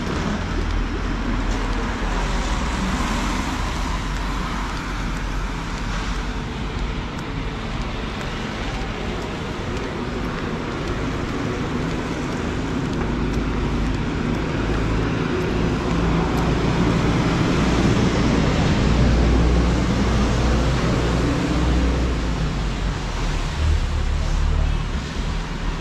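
Street traffic on a wet city road: a steady wash of car and tyre noise with a low engine rumble, swelling as vehicles pass closer about two-thirds of the way in.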